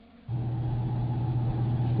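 A steady low hum with a single strong low note, starting abruptly about a quarter of a second in.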